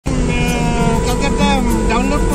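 A voice over background music with steady held tones, and a low, constant road rumble underneath.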